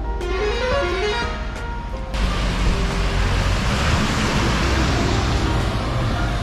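Background music with a piano-like melody for about two seconds, then an abrupt cut to loud, steady highway traffic noise: an even hiss with a low rumble.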